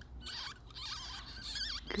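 Newborn ferret kits squeaking: a run of thin, high-pitched, wavering squeaks.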